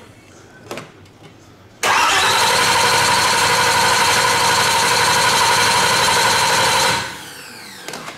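An engine being cranked over on its starter motor without firing, with a steady whine and churn. It starts suddenly about two seconds in, runs at an even speed for about five seconds, then winds down in falling pitch as the starter is released.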